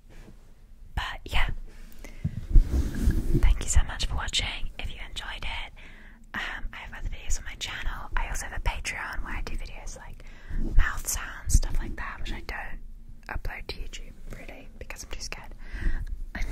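Hands rubbing, cupping and tapping fast on the grille of a Blue Yeti microphone, heard right at the mic as close, irregular rustling hiss with many sharp taps and deep thumps, pausing briefly twice.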